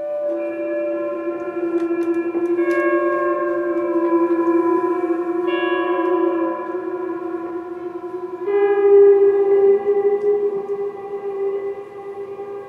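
Two electric guitars improvising together through an amplifier: long sustained notes and chords that shift to new pitches every few seconds, getting louder about eight and a half seconds in.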